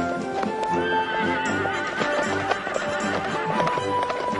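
Hooves clip-clopping over orchestral background music, with a horse whinnying about a second in.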